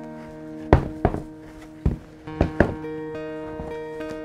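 Pieces of a rubber sculpture mold being handled and set down on a workbench: about five dull thumps and knocks in the first three seconds, the first the loudest. Background music with held guitar notes plays throughout.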